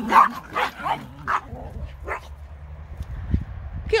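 Small terrier dogs barking in short, sharp yaps as they run, about five barks in the first two seconds or so. A single low thump comes a little after three seconds.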